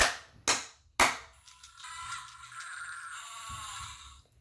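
Three hand claps half a second apart, answered about a second later by the Fingerlings Untamed dinosaur toy's electronic reaction sound from its small speaker. The reaction is a thin, pitched call lasting about two seconds.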